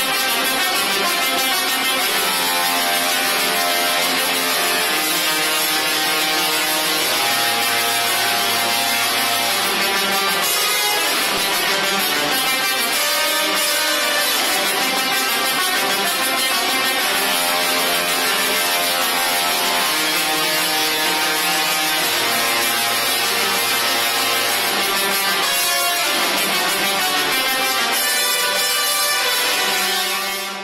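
Two six-foot musical Tesla coils playing a tune with their sparks: a loud buzzing tone that steps from note to note, the music made by the lightning arcs vibrating the air.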